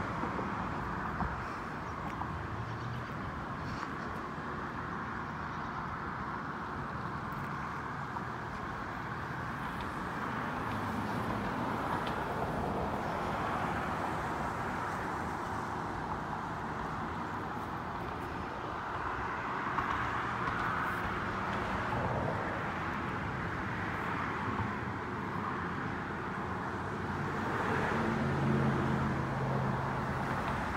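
Road traffic: a steady hiss of passing cars that swells and fades several times, with a low engine hum growing near the end.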